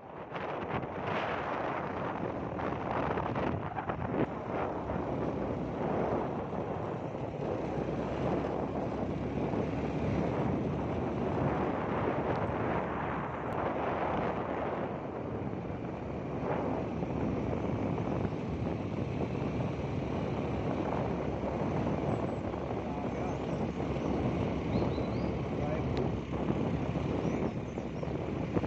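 Wind buffeting the microphone over the steady rumble of a moving vehicle's road and engine noise.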